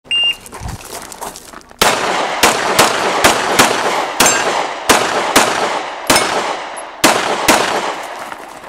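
Shot timer's short electronic start beep, then about a second and a half later a pistol fired about a dozen times in quick, unevenly spaced shots and pairs, each with a short ringing echo.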